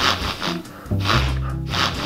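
A man sniffing hard in imitation of a dog, about four short sniffs half a second apart, over background music with steady low notes.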